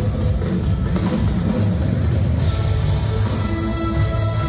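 Live band playing an instrumental passage with no vocals: drum kit, bass and guitar. The cymbals brighten about halfway through, and steady held notes come in near the end.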